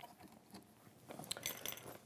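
Faint small clicks and taps of hands working at a domestic sewing machine's presser foot, most of them bunched in the second half.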